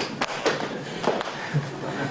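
A few sharp slaps of hands patting a back during a hug, about four in the first second and a quarter, over low background voices.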